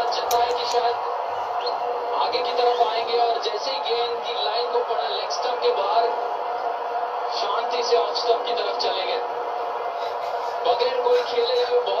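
Cricket match broadcast playing from a television in a small room: a steady din with muffled voices over it.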